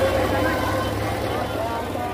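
A large crowd's voices, many people talking and calling out at once, over a steady low rumble.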